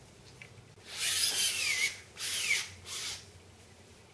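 A plastic spreader scraped in three strokes over peel ply on a wet-resin carbon layup, the first two strokes with a falling squeak.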